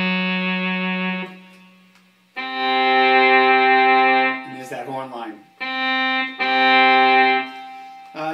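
Roland SC-55 sound module playing synthesized horn-section voices (sax, trumpet and trombone stacked together) from an Arduino-based electronic valve instrument MIDI controller. Held multi-note chords: one fades about a second in, a longer one runs from about two and a half to four seconds, and two shorter ones come near the end.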